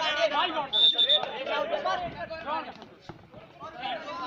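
Kabaddi players and spectators shouting and calling over one another, with a short high whistle blast about a second in. The voices fade toward the end.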